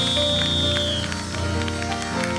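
Live gospel band music with sustained keyboard chords and a steady beat, with the choir clapping along. A single high note is held for about the first second, then cuts off.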